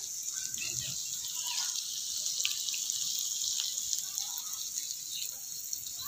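Meat sizzling on a hot grill pan: a steady high hiss with scattered small crackles.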